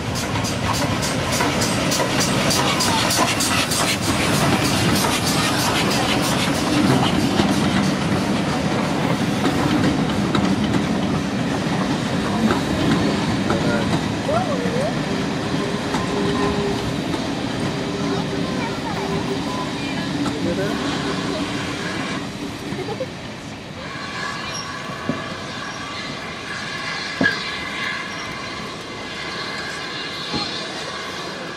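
Steam tank locomotive working past at close quarters with quick, regular exhaust beats, then its coaches rolling by, clattering over the rail joints with wheels squealing on the curve; the sound dies down in the last few seconds.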